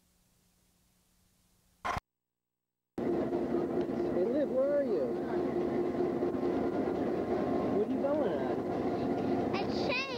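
Blank tape for the first two seconds, then, about three seconds in, the steady hum of a standing train, made of many held tones, with voices calling over it.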